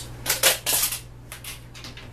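A tablespoon scooping and scraping flour from its container: a quick run of short scrapes and taps in the first second, then a few lighter ones.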